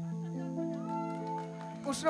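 A held electronic keyboard chord, with a few higher notes sliding in pitch above it partway through.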